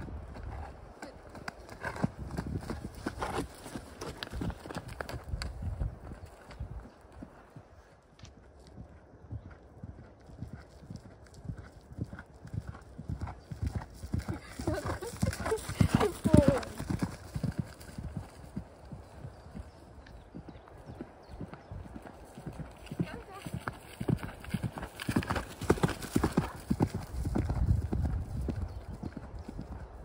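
Hoofbeats of a ridden horse on a dirt and grass track, as a run of quick strikes. They are loudest about halfway through and again near the end.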